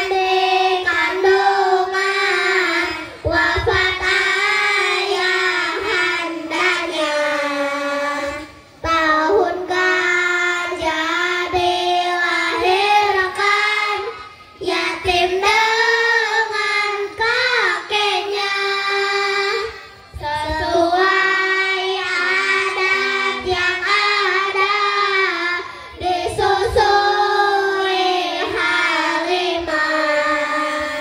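A group of children singing together in unison, a held melody sung in phrases of about five to six seconds with short breaks between them.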